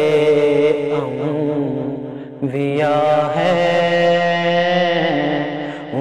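A man's voice singing a naat, a devotional poem in praise of the Prophet Muhammad, in long ornamented held notes. After a short breath just past two seconds in, he sustains one long note.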